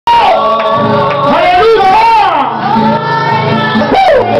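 Loud worship singing: a gliding solo voice over steady sustained low accompaniment notes, recorded close and near full volume.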